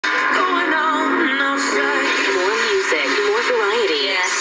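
Music with singing coming from an FM radio broadcast, thin-sounding with no bass.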